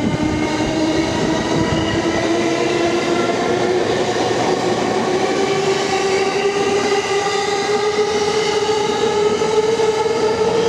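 JR East E231-series electric commuter train pulling away, its inverter and traction motors giving a whine that rises slowly and steadily in pitch as it accelerates, over the running rumble of the cars.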